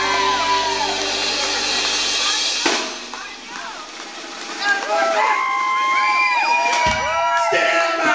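Live band with electric guitar and horns playing, then stopping abruptly about a third of the way in; in the break, voices from the crowd and stage, then held notes and sung lines without the bass, with two short band hits near the end.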